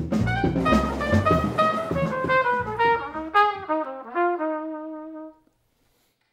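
Jazz music: a horn plays a melody over bass, then a run of notes stepping down in pitch. The music stops about five seconds in.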